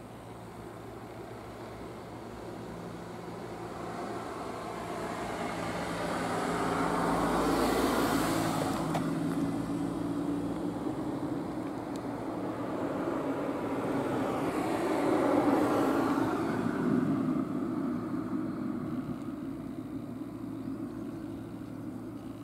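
Road traffic: two vehicles pass one after another, each swelling and then fading, loudest about eight and about fifteen seconds in.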